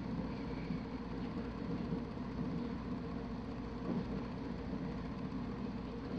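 A steady low hum of background noise, with no distinct sounds standing out.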